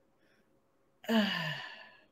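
A woman's voiced sigh, an exhaled 'oh' about a second in that falls in pitch and fades away.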